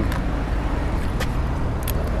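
Steady low rumble of a motor vehicle running close by, with a few light clicks about a second in and near the end.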